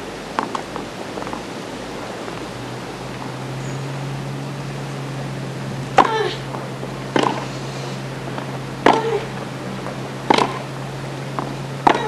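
Tennis ball struck back and forth by racquets in a baseline rally on a hardcourt: sharp single hits about every one and a half seconds from halfway in, with a few fainter knocks near the start. A low steady hum sits under the broadcast hiss from about three seconds in.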